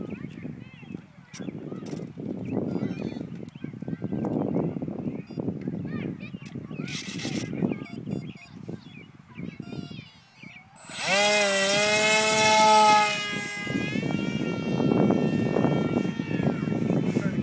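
Electric motor of a foam RC jet spinning a 7x5 propeller, throttled up suddenly about eleven seconds in to a loud steady whine for the hand launch. After about three seconds it turns quieter, its pitch wavering slightly as the plane climbs away.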